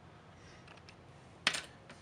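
Small plastic terminal block being handled and set down on a cutting mat: a few faint ticks, then one sharper click about a second and a half in.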